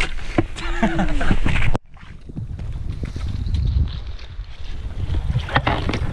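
Laughter for a little under two seconds, then after an abrupt cut a low, steady rumble of wind buffeting the microphone, with faint scattered ticks.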